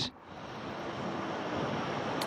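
Steady rushing noise of a breeze in open air, rising in after a brief dip at the start.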